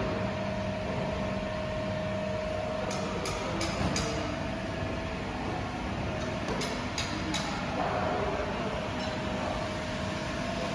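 Steady hum of factory machinery with a constant mid-pitched whine, broken by a few light clicks and clinks a few seconds in and again later.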